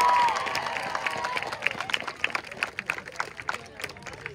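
A small crowd cheering, the voices fading out in the first half-second, followed by scattered hand clapping that thins out near the end.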